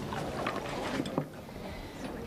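A person sitting down at a table: clothing rustling and a chair shifting, then a sharp knock about a second in.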